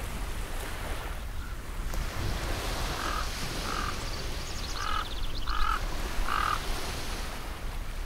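Ocean surf washing steadily on a beach, with a handful of short calls rising over it near the middle.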